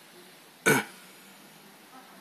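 A man's single short, loud throat sound, about two-thirds of a second in.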